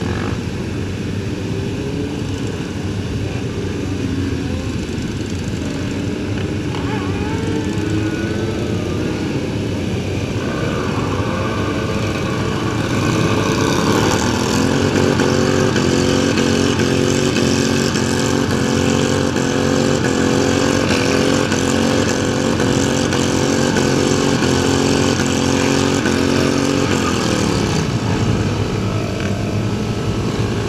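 Sport-bike engines in a large group ride, heard from one of the bikes at speed: an engine's pitch climbs about ten seconds in, holds a steady drone for some fifteen seconds, then drops away near the end.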